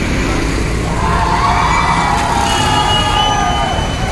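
Busy street traffic with a city bus passing close, its engine rumbling. From about a second in, a crowd shouts and cheers over it.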